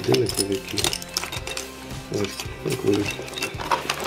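Hands rummaging through a cardboard box of old wristwatches and small metal parts: scattered light metal clinks and rattles as the pieces knock together, under a voice in the background.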